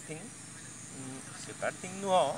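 Insects chirring steadily in a high, thin band, as in a grassy field at dusk, with a couple of brief voice sounds about a second in and near the end.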